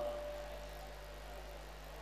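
A pause in the talk: a steady low hum with a faint background hiss under it, and a trace of the last word dying away in the first moment.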